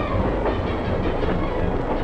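A train running along the track, its wheels rolling and clattering on the rails at a steady level.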